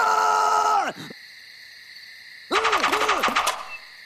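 Cartoon wolf spitting out berries: a loud voiced spitting sound falling in pitch for about a second, then about 2.5 s in a rapid sputtering burst of roughly ten pulses a second lasting about a second.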